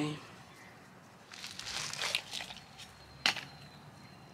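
Rustling and crinkling from gloved hands handling a potted blue chalk sticks succulent and its root ball, with one sharp click a little after three seconds in.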